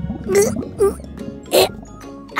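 Background music with three short cartoon vocal sounds from an animated robot straining to squeeze through a too-narrow whale throat.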